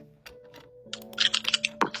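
A quick run of sharp clicks like typing on a computer keyboard, starting about a second in, over a faint steady hum.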